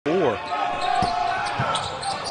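Court sound of a basketball game: a basketball bouncing on the hardwood, with a couple of low thumps about one and one and a half seconds in, and voices calling out from the floor.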